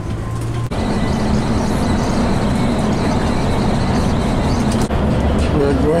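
Steady engine and road noise of a coach bus, heard inside the cabin while it is driving, with a faint steady high whine. The noise steps up abruptly just under a second in.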